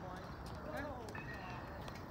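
Tennis balls being hit with rackets and bouncing on a hard court: several short, sharp pops at uneven spacing, under indistinct voices.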